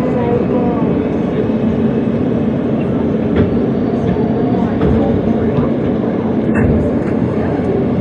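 New York City Subway E train heard from inside the car as it brakes into a station: a steady rumble of wheels on rail and running gear, slowing until the train stands at the platform near the end.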